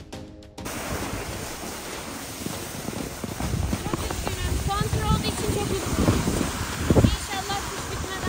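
Wind on the microphone and the rush of a snowboard sliding over packed snow, with heavy thumps of wind buffeting now and then; background music cuts off less than a second in.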